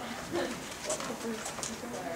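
Indistinct speech: a voice talking in the room, too unclear for the words to be made out.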